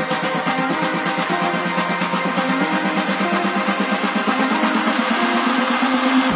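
Electronic dance music from a house DJ mix: a stepping synth melody over fast, even pulses, with the bass cut out.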